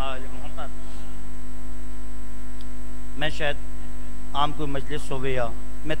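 Steady low electrical mains hum through the microphone and PA system. A voice is heard in short phrases about three seconds in and again from about four and a half to five and a half seconds.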